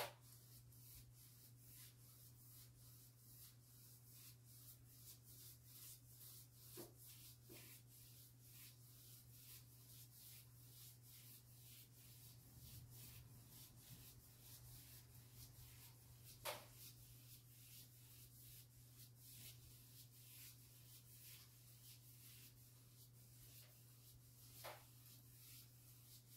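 Faint, rhythmic swishing of a paintbrush scrubbing varnish onto a painted surface, about two strokes a second, over a steady low hum, with a couple of louder taps.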